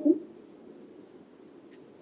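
A pause in a man's talk: the end of his voice, then faint steady room hiss with a few soft, scratchy ticks.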